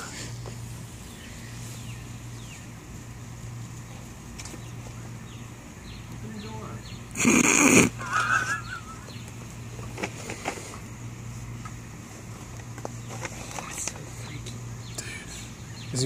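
Steady low hum over faint outdoor background, with one short, loud rush of noise about seven seconds in.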